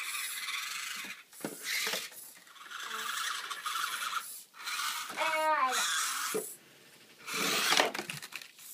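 Team Losi Micro Crawler's small electric motor and gearbox whirring in a high rasp, in on-and-off bursts of throttle as it climbs over parked RC trucks. A short pitched whine breaks in about five seconds in.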